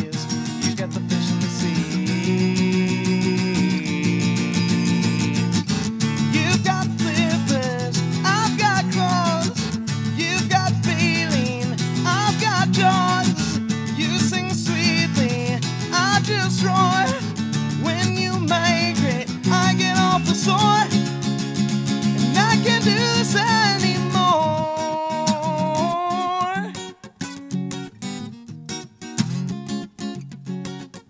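A man singing to his own strummed acoustic guitar. From about seven seconds in, a sliding vocal melody runs over the steady strumming and ends on a long held note; near the end the strumming drops to quieter, sparser playing.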